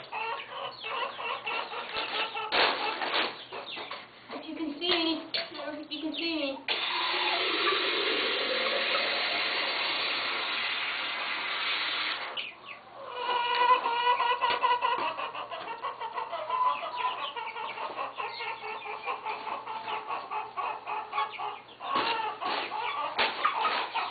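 Chickens clucking throughout, with water running steadily for about five seconds midway, starting and stopping abruptly, as the chickens' water is filled.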